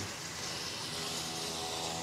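Steady hiss with a faint, even hum underneath, from the open microphone of an outdoor live street report.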